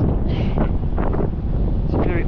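Steady wind buffeting the microphone, a low rumbling noise.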